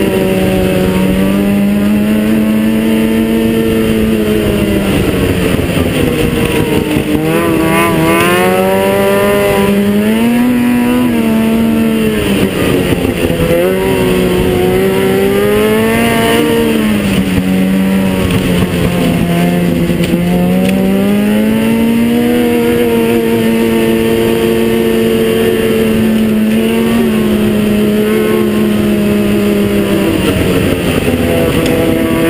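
Ski-Doo 600 SDI two-stroke twin snowmobile engine, fitted with a Dynoport pipe and a Barker's Big Core exhaust, running under way on the trail. Its pitch rises and falls again and again as the throttle is opened and eased.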